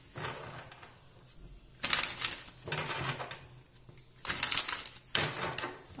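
Large tarot cards being shuffled by hand, papery slides and flicks in several short bursts with brief pauses between.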